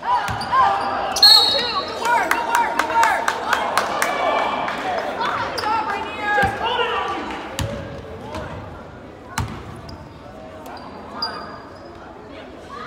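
Basketball game in a reverberant gym: the ball knocks on the hardwood floor in a quick run of bounces during the first few seconds, with a single bounce later. A short, high referee's whistle sounds about a second in, stopping play, and players' and spectators' voices echo throughout.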